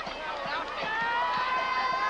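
Football crowd in the stands: many voices talking and calling out over one another, with a long steady held tone coming in about a second in.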